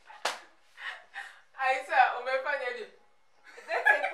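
Two women laughing, with a single sharp slap about a quarter second in, like a hand smacking a thigh or the other hand, followed by a longer run of laughter and a brief lull before more laughing near the end.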